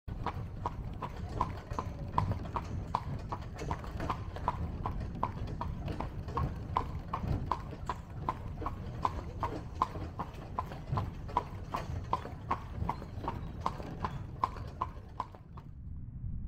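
Horse's hooves clip-clopping on a paved road as it pulls a carriage, a steady beat of about three strikes a second over a low rumble. It cuts off suddenly near the end.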